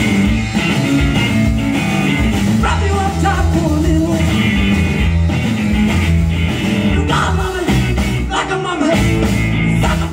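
Live rock band playing loud and without a break: electric guitar and a drum kit, heard through the reverberant room of a concert hall.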